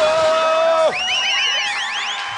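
A man singing, holding one long note of a Taiwanese-language song phrase that drops off just under a second in. A quick run of high chirps follows, each rising then falling.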